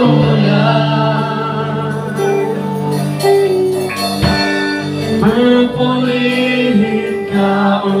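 Live praise-and-worship music: a man singing into a microphone over a band that includes electric guitar, with held notes and sustained bass.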